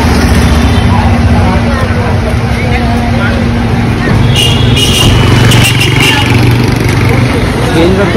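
Street traffic: vehicle engines running nearby with a steady low hum, under faint voices.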